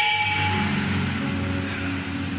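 Electric keyboard holding low, sustained chords, swelling in about half a second in as the singing fades.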